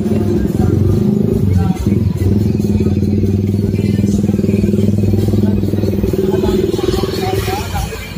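A small engine running steadily close by, holding one even pitch, then fading out about seven and a half seconds in.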